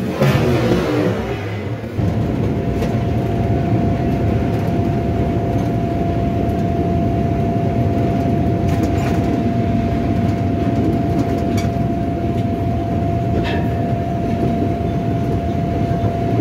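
Train running along the track, heard from the front of the train: a dense low rumble with a single steady tone held from about two seconds in.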